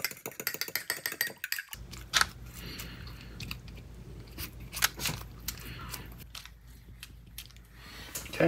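A metal utensil beating an egg in a ceramic bowl, with quick rapid clinks that stop about a second and a half in. After that, a low steady hum runs under a few scattered sharp taps and soft dabbing as a silicone pastry brush spreads egg wash over the pastry.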